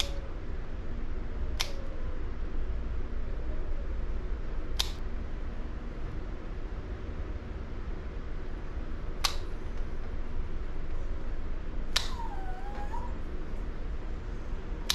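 Plier-style dog nail clippers snipping the tips off a Shih Tzu's nails: about five sharp clicks a few seconds apart. A brief whimper from the dog comes just after the clip about twelve seconds in.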